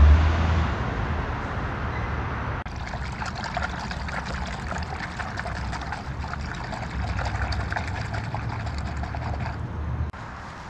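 Hand churning and splashing water in a metal bucket to whip car-wash soap into suds: a dense run of rapid small splashes. Before it, a steady hiss lasts a couple of seconds and stops abruptly.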